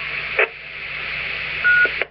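Hiss from a Radio Shack Pro-2016 scanner's speaker as a 2-metre amateur repeater's transmission ends, with a short burst about half a second in. Near the end comes a short single beep, the repeater's courtesy tone, and then the hiss cuts off suddenly as the repeater's carrier drops and the scanner's squelch closes.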